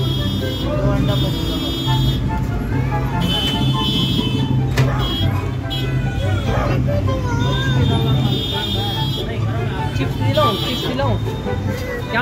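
Street traffic: vehicle engines running and horns sounding on and off, with voices in the background.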